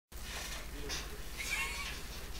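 Faint, indistinct background voices over a steady low hum and hiss, with a brief high-pitched squeaky tone about one and a half seconds in.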